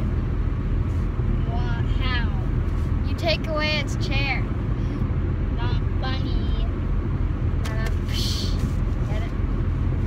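Steady low road rumble of a car in motion, heard from inside the cabin. A child's voice makes short wordless sounds over it several times.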